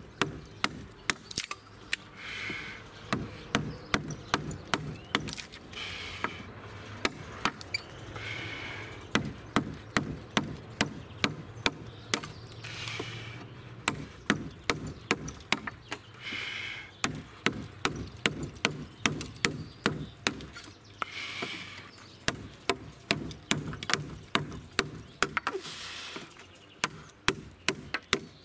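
Mallet blows on the copper-capped handle of a woodcarving gouge as it cuts into a wooden post: a steady series of sharp knocks, about one to two a second, in runs with short pauses.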